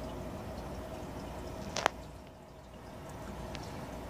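Aquarium water trickling and bubbling steadily, as from the tank's filter, with one sharp click a little before the middle.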